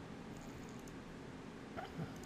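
Quiet room tone in a small room, with one faint short sound near the end.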